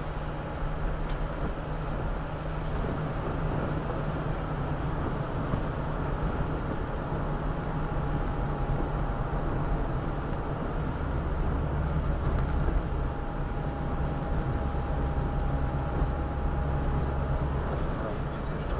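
Steady in-cabin driving noise of a roadster on a wet road: low engine hum and tyre noise, with a faint steady whine over it.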